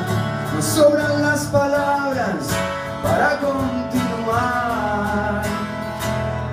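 A man sings in Spanish over a strummed acoustic guitar, a live solo performance. The voice comes in two sung phrases in the middle and later part, with the guitar going on underneath.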